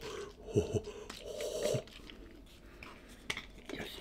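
Juice sloshing in a plastic bottle as it is shaken in short bouts, with a couple of knocks. Near the end there is a single click as the bottle's screw cap is twisted open.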